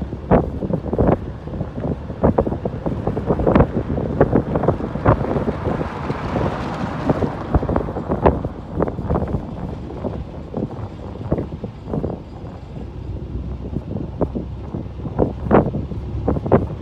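Wind buffeting a handheld microphone outdoors, a continuous low rumble broken by irregular knocks and rustles. A broad swell of noise rises and fades around the middle.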